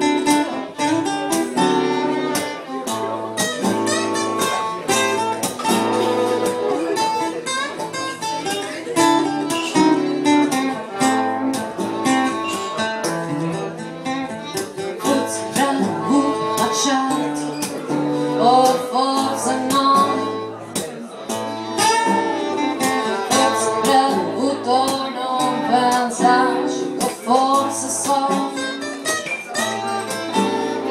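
Acoustic guitar strummed and picked in a steady pattern, playing the instrumental introduction of a slow ballad.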